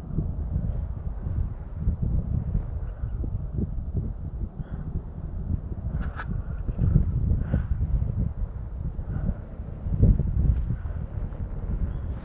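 Wind buffeting the microphone in gusts: a low rumble that rises and falls, strongest about ten seconds in.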